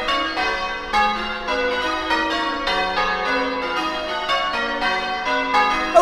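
Church bells change ringing: a peal of several tuned bells struck one after another in quick succession, their ringing tones overlapping, played as a sound effect.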